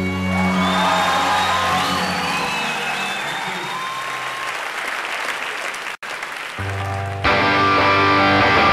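The last chord of a band's song dies away under studio-audience applause and whistles. After a sudden cut about six seconds in, a low bass note sounds and the full band with guitars comes in near the end.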